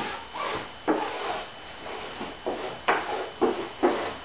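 A brush scrubbing epoxy into fiberglass tape on a wooden hull seam, short scratchy strokes about twice a second.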